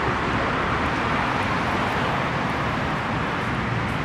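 Steady road traffic noise, an even rush of passing cars with no single vehicle standing out.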